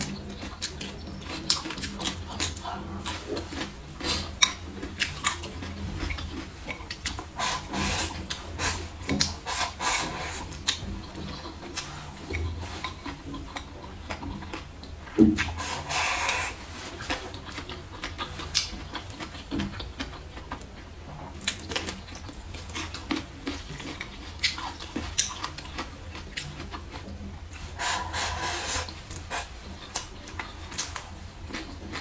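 Close-miked eating: wet chewing and lip-smacking with many small clicks, a sharp click about fifteen seconds in, and a longer slurping draw of food from the bowl's rim just after it and again near the end.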